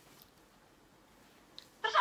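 Near silence: a pause in a speakerphone call, with one faint click about one and a half seconds in. Near the end, a woman's voice starts speaking over the phone's speaker.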